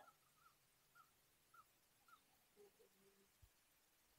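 Near silence, with a few very faint short chirps scattered through the first half.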